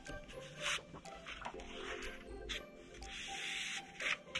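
Sheet of paper picked up, laid over an inked rubber printing block and rubbed down by hand: soft paper swishes, then a longer rubbing sound near the end, with faint background music underneath.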